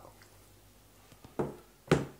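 Two dull knocks about half a second apart, the second louder, as a stainless steel tray is put down on a wooden worktop.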